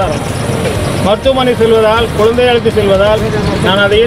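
A man speaking, with street and vehicle noise behind; the noise stands out most in the first second, before the voice takes over.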